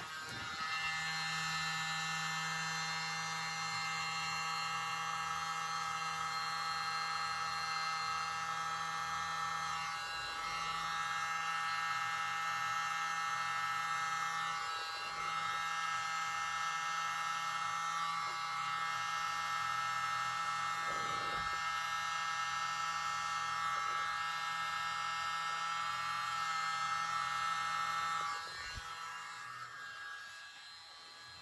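Small handheld electric mini blower running steadily with a buzzing motor whine while it blows acrylic paint outward into a bloom. It dips briefly twice midway and cuts off near the end.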